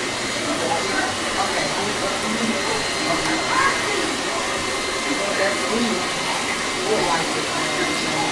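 Steady rushing fan noise, even throughout, with faint, indistinct voices talking underneath.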